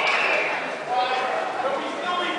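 Indistinct voices talking, carried by the echo of a large hall.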